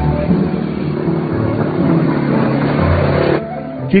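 Background music mixed with a motor vehicle engine running and revving, rising and falling in pitch; the engine cuts off suddenly about three and a half seconds in.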